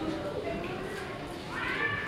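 Indistinct talking in a large hall, with a short, high-pitched rising voice-like sound near the end.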